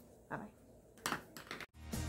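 A few faint rustles and short clicks of a hand handling the recording device, then, after an abrupt cut, outro music with a steady beat starts near the end.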